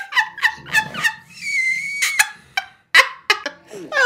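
A woman laughing out loud, then a short held high-pitched tone and a string of sharp clicks.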